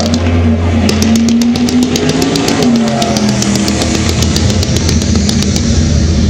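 Music of a pyromusical show playing, with a rapid run of sharp firework shots, about five a second, starting about a second in and stopping near the end.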